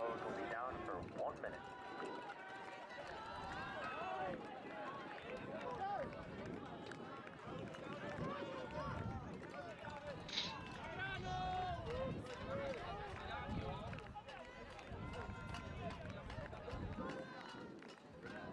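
Faint field-level sound of a lacrosse game: players and sideline spectators calling and shouting, with scattered light clicks.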